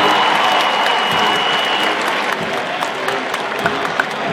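Large stadium crowd applauding and cheering as a marching band's show ends, the noise slowly dying down. A single high steady tone sounds through the first two seconds, and separate claps stand out near the end.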